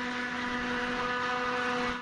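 A steady, machine-like hum at a constant pitch over a hiss, holding level throughout.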